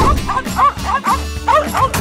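Cartoon music with a small animal's rapid, high yipping over it, a quick run of short yaps.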